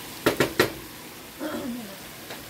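Wooden spoon knocking three quick times against a copper pan as it is lifted out, over faint sizzling from the frying pan.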